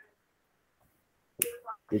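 Near silence for over a second, then a sharp click and a person's voice starting to speak.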